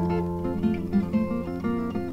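Background music: acoustic guitar picking short notes over sustained low notes, with no singing.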